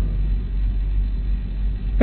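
Steady low hum and rumble: the background noise of the sermon recording, with no voice.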